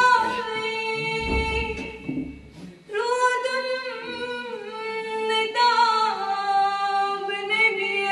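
Young female voices singing a Kashmiri naat unaccompanied, in long held, gliding notes. About a second in the line breaks off and a low rumble fills the gap before the next line begins at about three seconds.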